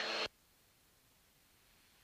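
Near silence: the sound track drops out to nothing after the end of a spoken word.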